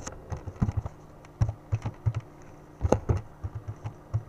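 Typing on a computer keyboard: a quick, irregular run of keystroke clicks, some in fast clusters.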